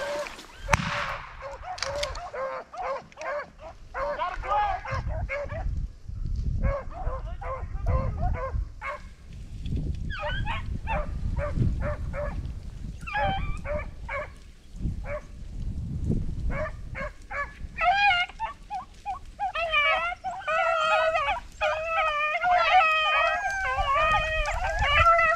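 A pack of beagles baying on the trail of a freshly jumped rabbit: short calls in quick runs, building into a near-continuous chorus of several dogs over the last few seconds.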